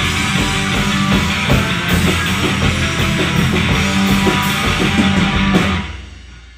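Live heavy rock trio of distorted electric guitar, bass guitar and drum kit playing loudly with sustained low notes and drum hits, then stopping abruptly just before the end as the song finishes.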